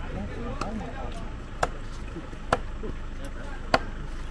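Large knives chopping meat on a wooden chopping board: three sharp chops about a second apart, the last the loudest, with faint voices behind.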